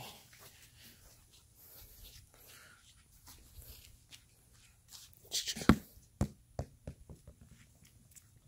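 A play ball bouncing on concrete: one loud bounce, then a run of quicker, fainter bounces that die away.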